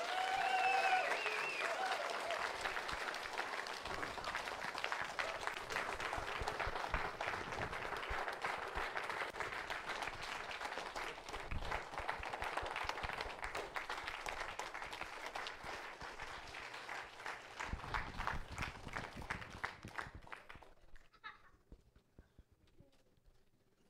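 A congregation applauding: dense, sustained clapping, with a few voices cheering in the first couple of seconds. The clapping thins out and dies away near the end.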